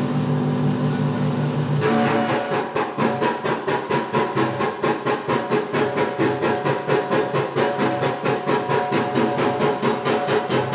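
Live math rock from electric guitar and drum kit. Held guitar tones change at about two seconds into a fast, evenly repeating pattern of guitar notes and drum strokes, and brighter cymbals join near the end.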